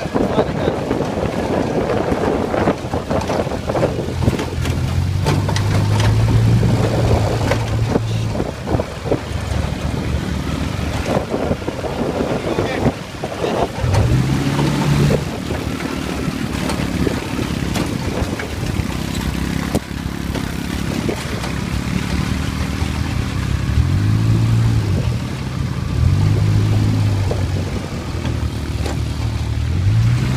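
Dune buggy engine running under way, its pitch climbing several times as it revs up, over rough jolting knocks from the ride.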